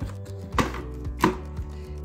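The plastic lid of a Compact Cook multicooker is closed onto its stainless-steel bowl and its clamps are snapped shut, giving two sharp clicks about two-thirds of a second apart. Soft background music plays underneath.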